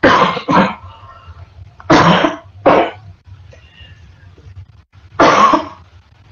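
A person coughing five times: a double cough at the start, another double cough about two seconds in, and a single cough near the end.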